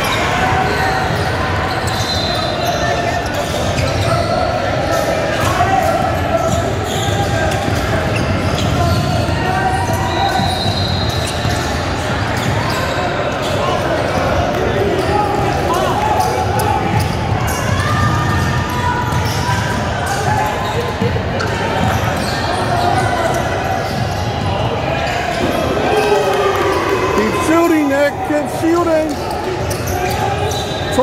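Basketball being dribbled and bounced on a hardwood gym court during a game, mixed with players' and onlookers' voices, in an echoing hall.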